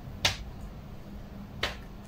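Two short, sharp snaps about a second and a half apart, from hands working with paper and a ruler on a desk.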